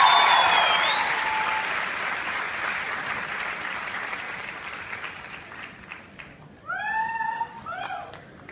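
Concert audience applauding, with a cheer and a high whistle at the start; the clapping fades away over several seconds. Near the end a voice calls out briefly.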